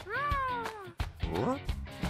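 A cartoon character's voice giving one long whine that falls in pitch, then a short rising one, over background music.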